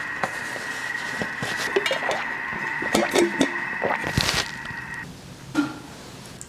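Kitchen tap running, a steady rush with a faint thin whistle, with a few knocks and rustles of kitchen handling over it; it stops about five seconds in, leaving quieter handling sounds.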